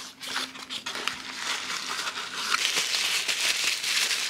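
A few sharp clicks of thin cardboard box flaps being folded open, then white tissue paper wrapping crinkling and rustling continuously as it is pulled out and unwrapped.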